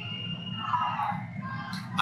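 Football supporters' crowd noise from the stands: a general rumble with distant shouting and chanting. A single steady high tone sounds for about the first second.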